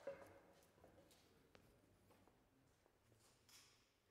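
Near silence, with a brief faint sound right at the start that fades out within about a second.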